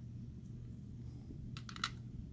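A quick run of three or four small, sharp plastic clicks near the end as tiny action-figure hand pieces are handled and set down on a clear plastic display base, over a faint low hum.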